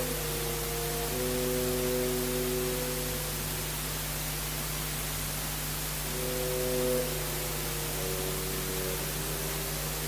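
Orchestra playing quiet held chords in the middle and low register: one chord for the first three seconds, another briefly around six to seven seconds in, then softer sustained notes near the end. A steady hiss and low hum from the recording lie beneath it throughout.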